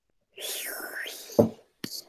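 A person's breathy, whispered exhale lasting about a second, with a short voiced sound at its end and a brief click just after.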